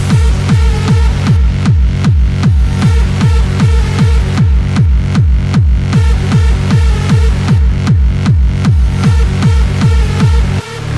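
Hard dance music from a DJ mix: a loud, heavy kick drum hits about two and a half times a second, each hit falling in pitch, under repeating synth lines.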